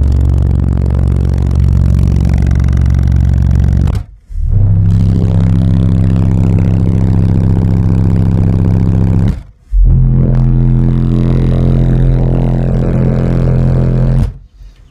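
Car subwoofers powered by two strapped SoundQubed SQ4500 amplifiers playing three loud bass test-tone burps of about four seconds each, with short gaps between, stepping up in pitch from 23 Hz to 33 Hz to 43 Hz. The amps are run one step below clipping.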